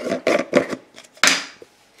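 A plastic screw-top jar of popcorn kernels and its lid being handled: a run of short clicks and knocks, the loudest about a second in.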